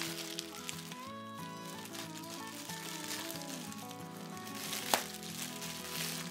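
Soft background music with plastic packaging crinkling and rustling as a poly mailer bag is torn open and a bagged plush pulled out, with one sharp crackle about five seconds in.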